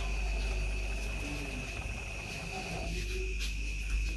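Crickets trilling steadily at one high pitch, fairly faint, over a low steady hum.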